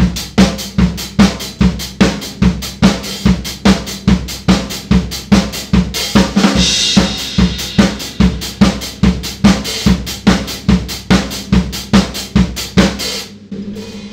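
Cambridge Drum Company maple drum kit playing a disco groove at about 142 beats per minute: four-on-the-floor bass drum, snare on two and four, and offbeat eighth-note hi-hat. A cymbal rings out about halfway through, and the playing stops shortly before the end.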